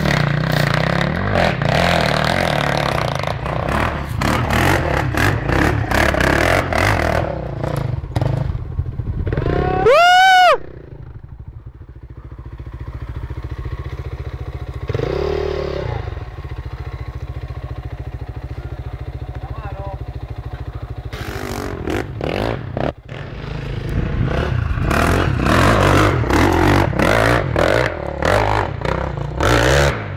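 Enduro dirt bike engine revving hard and unevenly as the bike climbs through loose dirt. About ten seconds in, one very loud rev rises and falls in pitch; then the engine drops to quieter steady running before hard revving returns for the last several seconds.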